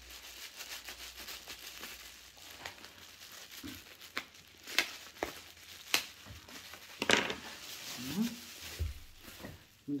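Newspaper crinkling and rustling as a wrapped beer bottle is unwrapped by hand, with a few sharper crackles.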